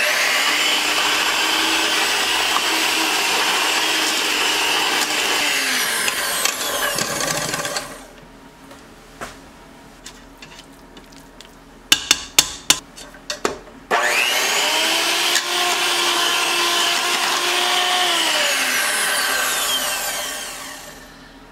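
Electric hand mixer beating boiled sweet potatoes and their cooking water in a stainless steel pot, its motor running with a steady hum. It stops for a few seconds, a quick run of sharp knocks follows, then it runs again for about six seconds and winds down near the end.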